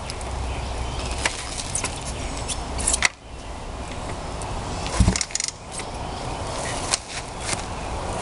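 Kick-starting a Honda 350 twin with its electric starter removed: two heavy thumps of the kick lever about three and five seconds in, the second the louder, and the engine does not catch.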